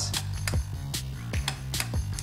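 Plastic clicks of the Greedy Granny toy's chair lever being pressed, its ratchet mechanism clicking a few times, over background music.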